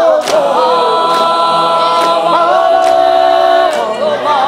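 Mixed choir singing a cappella in parts, holding long chords that move to a new chord a little after two seconds in. A few sharp hits cut through the singing.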